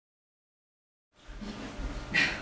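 Dead silence, then about halfway through the room sound of a lecture room cuts in: a steady low hum with faint hiss.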